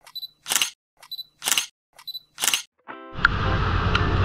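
Camera focus beep followed by a shutter release, repeated about once a second, three times: a photo-snapping effect. Near the end a short tone sounds, then a steady outdoor hiss of wind and rain on the microphone begins.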